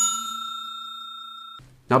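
A bell-like notification ding sound effect rings out with a steady chiming tone, fading over about a second and a half before cutting off abruptly. A man's voice starts speaking at the very end.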